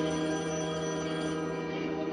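Background music from the show's score: a sustained synthesizer chord of steady tones, held without a beat, with a few of its higher notes dropping out near the end.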